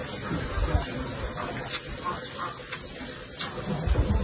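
A person slurping fried rice noodles into the mouth and chewing, with wet mouth sounds and a couple of short clicks.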